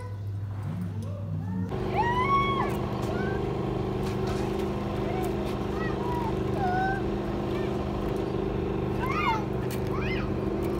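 A steady mechanical hum of vehicles on an urban road, with several fixed tones over a low rumble. It starts abruptly about two seconds in. Over it come short high calls that rise and fall, like children's voices, heard several times.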